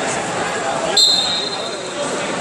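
A referee's whistle blast about a second in: one sharp high tone that fades over the following second, over the hall's background chatter.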